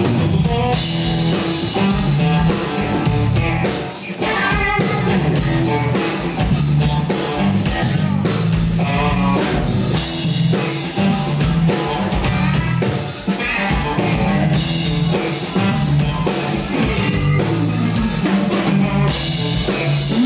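Live rock band playing an instrumental passage: electric guitar, electric bass and drum kit with cymbals, continuous and loud, in the run-up to the first vocal line.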